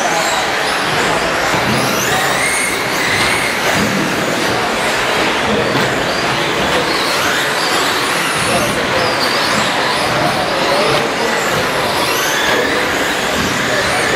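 Several 1/10-scale electric 2WD short-course RC trucks racing on an indoor track: their motors whine, rising and falling in pitch as they accelerate and brake, over a steady bed of noise.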